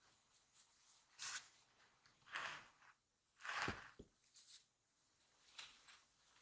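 Quiet handling sounds: three short rustling scrapes, the loudest about three and a half seconds in with a soft low knock, then a few faint ticks.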